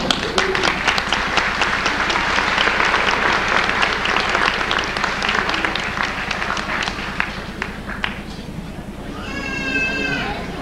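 Audience applauding: dense clapping that thins out and fades away over about eight seconds.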